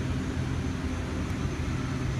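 Steady low hum and airy rush of a walk-in produce cooler's refrigeration fans.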